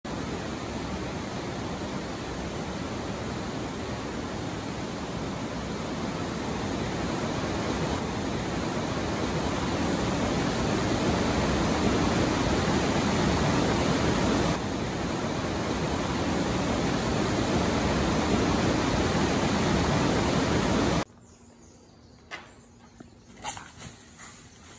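A steady, even rushing noise that grows slowly louder, then cuts off abruptly about three seconds before the end, leaving quiet with a few faint ticks and rustles.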